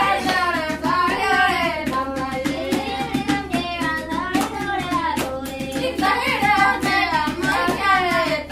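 Traditional Fulani song: voices singing a melodic line, accompanied by frequent sharp hand claps.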